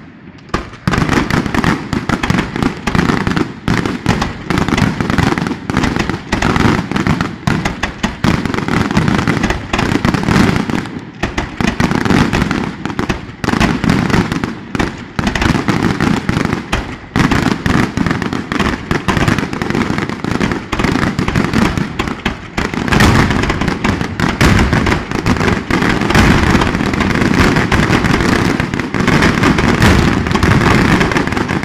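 Closing fireworks display: a dense, near-continuous barrage of aerial shell bursts and firecracker reports, loud throughout, starting about half a second in after a brief lull.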